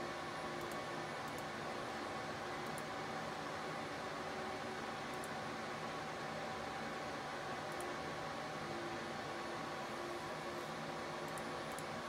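Steady whir of rack server cooling fans: an even hiss with several faint steady hum tones running through it.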